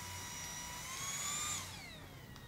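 A distant siren wailing: one pitched tone that holds level, rises about a second in and falls again near the end.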